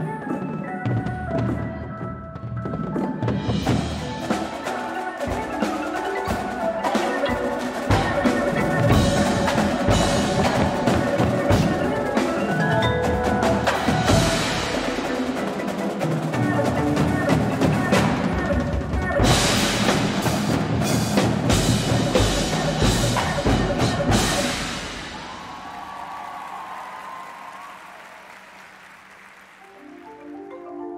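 Indoor marching percussion ensemble playing: marching bass drums, snares and tenor drums hit dense rhythmic passages over marimba-like mallet percussion. The music builds to its loudest stretch in the middle, then drops about 25 seconds in to a soft sustained sound that fades near the end.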